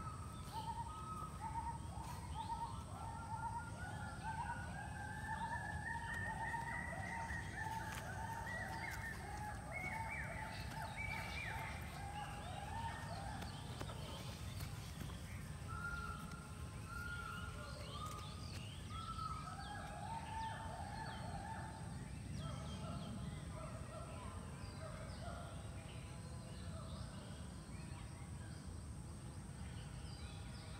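Birds calling from the trees, a long run of quick repeated calls through the first half and another run in the middle, over a steady low rumble.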